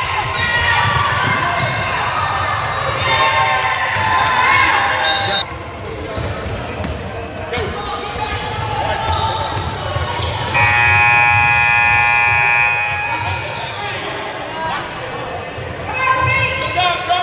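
A basketball dribbled on a hardwood gym floor among spectators' shouts and chatter, the voices loudest in the first five seconds, where the sound drops abruptly. About ten seconds in, a steady horn sounds for about two seconds.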